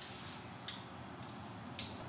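A few faint, light clicks from a tape measure being handled and held against a truck's fender, the clearest about two-thirds of a second in and near the end, over quiet room tone.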